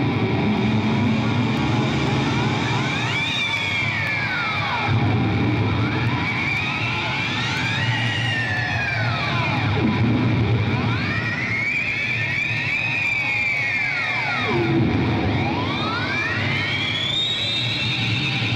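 Heavily distorted electric guitar played live, solo, through stage amplifiers. It makes about four long, siren-like pitch sweeps, each rising and then falling over several seconds, over a steady low droning note.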